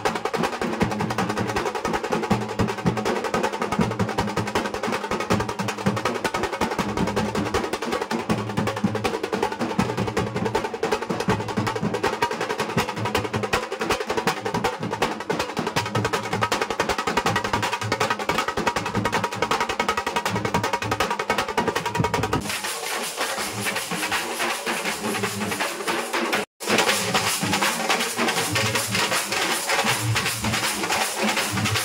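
A street band of large barrel drums beaten with sticks, playing a loud, fast, continuous rhythm. The sound changes abruptly about three-quarters of the way through and drops out for an instant shortly after.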